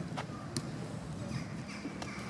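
Outdoor ambience: a few birds chirping in short notes over a steady low rumble of wind, with two sharp clicks in the first half-second.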